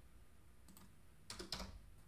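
A few faint computer keyboard keystrokes, most of them in a quick cluster about one and a half seconds in.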